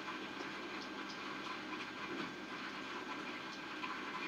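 Scissors cutting paper: faint, scattered snips over a low hiss.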